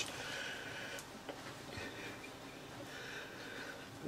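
Quiet workshop room tone with a faint steady hum, and one light click about a second in.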